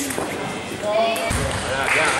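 Table tennis rally: the ball clicking sharply off the bats and the table, with a low thud a little past halfway.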